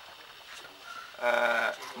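A man's voice holding one drawn-out vowel at a steady pitch for about half a second, a hesitation sound in the middle of his sentence.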